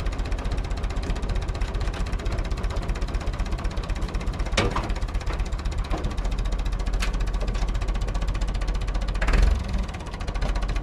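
A tractor's diesel engine running steadily with a fast, even beat, while the tractor's hitch lifts a firewood processor. Sharp metallic clanks come about halfway through and again a couple of seconds later, and the engine grows briefly louder near the end.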